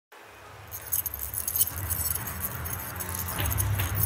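Intro of a rap track: a low bass drone fades in, and under a second in it is joined by irregular, jangling high-pitched clinks like shaken keys or small bells.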